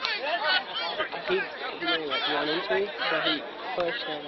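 Several people talking over one another in overlapping chatter, with no single voice clear. The voices come from players and onlookers standing on the sideline.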